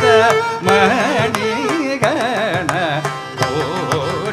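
Carnatic concert music: a melodic line with wavering, sliding ornaments, sung, over a steady run of mridangam strokes.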